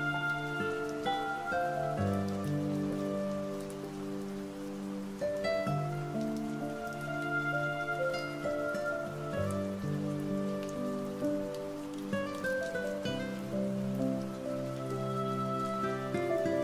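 Slow, soft relaxation music of held chords that change every two to three seconds, laid over the steady sound of falling rain.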